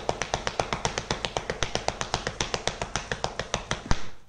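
Bare fists striking a plastered wall in a rapid Wing Chun chain punch: a fast, even train of sharp smacks at about ten blows a second.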